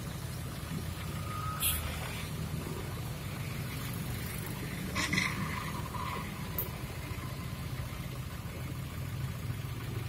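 Suzuki Ertiga car engine idling steadily, with a couple of brief clicks, one near the start and one about halfway.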